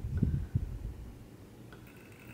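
A few soft, low knocks and handling noises in the first second as a rubber-bulb pipette is pushed into a fountain pen barrel and squeezed to empty ink into it, then near-quiet room tone.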